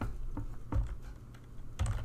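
Computer keyboard keystrokes: a few separate key clicks, a short pause, then two more clicks near the end.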